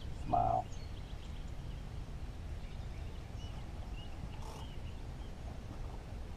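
Open-air lake ambience: a steady low rumble of wind on the microphone with faint bird chirps, and one short, low-pitched sound about half a second in.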